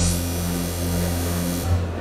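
Live industrial electronic music: a sustained bass drone under steady held synthesizer tones, with a bright high hiss that cuts off shortly before the end as the piece finishes.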